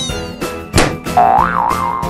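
Children's background music with a cartoon boing sound effect: a quick downward swoop at the middle, then a wobbling tone that rises and falls through the second half.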